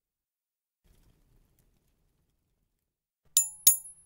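Near silence for about three seconds, then two quick, bright metallic dings about a third of a second apart, from a small bell.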